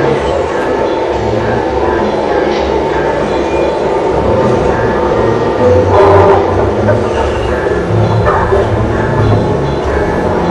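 Dense, layered experimental electronic music: a continuous loud rumble with held tones and an irregular low throb underneath, swelling louder about six seconds in.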